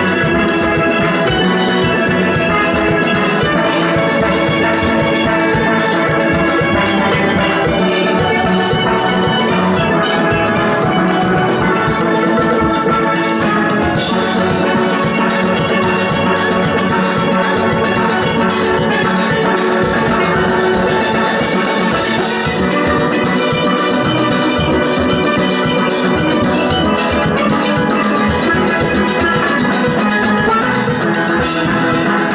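A full steel orchestra playing live: many steel pans struck with rubber-tipped sticks, ringing chords and melody over a steady drum and percussion beat. The percussion grows brighter about halfway through.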